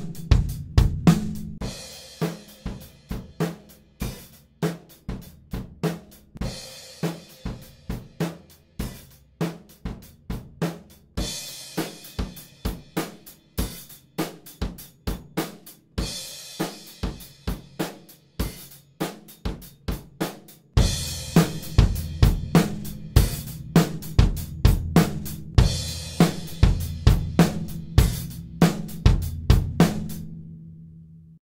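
Acoustic drum kit playing a steady groove of kick, snare, hi-hat and cymbals, recorded in a dehumidified dry room and played back through changing mic sets: close direct mics, then distant room mics, then the full mix. The bass drum's low end thins out in the middle stretch and comes back strongly, and louder, about 21 seconds in.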